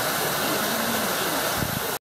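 A steady, even hiss of falling water, with a brief low bump from handling near the end.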